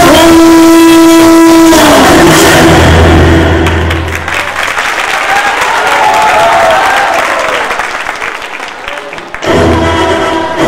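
A song ends on one long held sung note, then the audience applauds for several seconds, with a few voices rising over the clapping. New music starts abruptly near the end.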